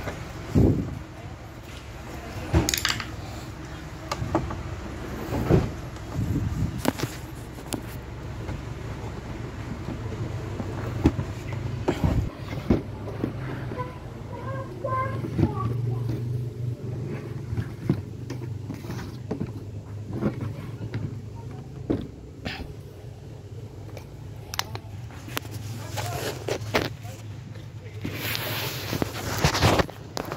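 Hand screwdriver driving screws into a plastic TV back cover and the set being handled: scattered clicks and knocks over a steady low hum.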